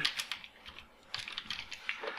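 Keystrokes on a computer keyboard typing a short word: a few clicks at the start, a brief pause, then a quick run of clicks in the second half.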